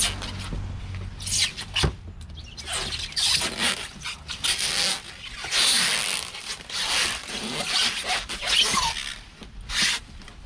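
Clear plastic bag and white foam packing sheet crinkling and rustling in irregular bursts as a motorcycle saddlebag is pulled out of its wrapping.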